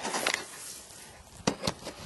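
Quiet handling and movement noise: a soft rustle at first, then three sharp light clicks about one and a half seconds in.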